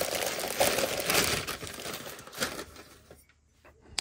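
Newspaper and a thin plastic bag crinkling and rustling as hands unwrap a mug from them, for about two and a half seconds, then dying away, with a couple of faint clicks near the end.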